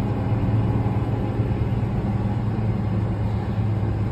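Fendt tractor's diesel engine running steadily under load, pulling an implement in the ground, heard from inside the cab as an even low hum.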